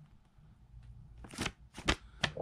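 A stiff paper instruction card being handled and flexed in the hands, giving two short crackles in the second half.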